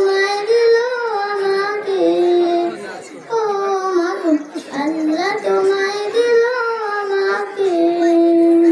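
A solo voice singing a Bengali Islamic gojol (devotional song): a slow melody of long held notes that rise and fall, with short breaks about three and four and a half seconds in.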